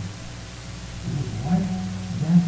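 A short pause in a man's speech, then his voice starts again about a second in, over a steady low hum.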